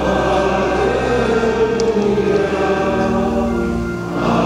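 Men singing in a church over sustained low organ notes, most likely the sung acclamation before the Gospel. The phrase fades right at the end.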